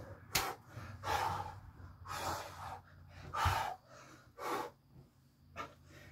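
A man breathing hard from exertion, about six loud breaths in and out, roughly one a second.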